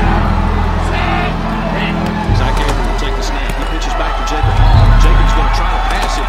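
Dramatic film score with deep, heavy low-end hits under crowd and voices at a football game; the low pulse drops out a little past two seconds and comes back louder about four and a half seconds in.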